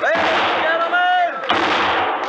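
Six-gun shots in a noisy saloon crowd: one shot at the start and another about a second and a half in, with men whooping and shouting around them.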